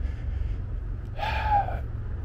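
Steady low rumble of a moving e-scooter ride, with a short breathy vocal sound from the rider a little past a second in.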